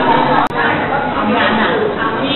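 Many people chatting at once in a large dining hall, a steady murmur of overlapping voices. The sound drops out for an instant about half a second in.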